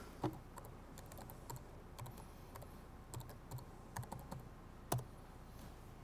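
Faint computer keyboard typing: scattered key clicks as a short command is typed, with a sharper click about five seconds in.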